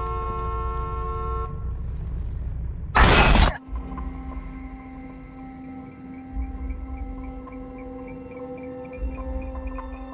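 A car horn sounding steadily, cutting off after about a second and a half; about three seconds in there is a short, loud noisy crash, then sustained film-score drone tones, one of them slowly rising, carry on.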